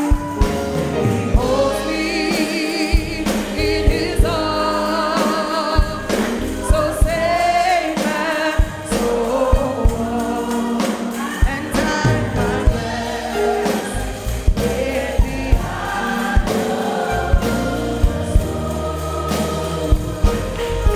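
Congregational gospel singing by many voices together, over a live band with a steady bass and regular drum hits keeping the beat.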